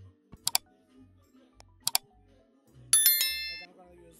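A song playing through the JBL Libra 250 PA amplifier's speaker from a USB pen drive, with a steady bass beat, after the amplifier's no-sound fault has been repaired. Over it, two sharp double clicks and then a bright bell-like ding about three seconds in, the sound effect of a like-and-subscribe button animation.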